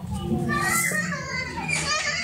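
Children's voices, talking and calling out as they play, over a steady low hum.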